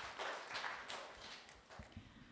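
Light scattered audience applause, fading out to a few faint claps.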